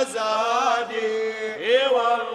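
A voice chanting an Arabic devotional praise poem for the Prophet in maqam Sikah, holding a long ornamented melisma with wavering pitch that slides upward about a second and a half in.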